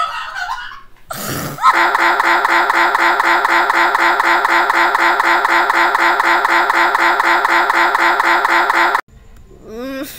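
Loud, harsh computer sound stuck in a loop, repeating the same short fragment about four times a second and cutting off suddenly about a second before the end. This is the stuck-audio-buffer stutter typical of a Windows system crashing.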